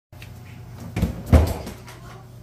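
A door being opened: two dull knocks, about a second in and a third of a second apart.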